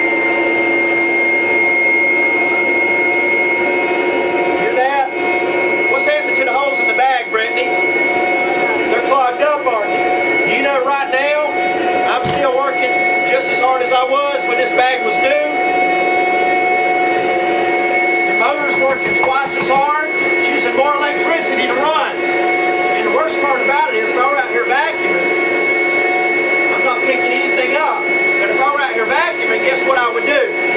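A Rainbow canister vacuum cleaner runs steadily with a high whine. Its hose end is fitted with a small cloth filter bag that is clogging with dust from a couch cushion, choking the airflow.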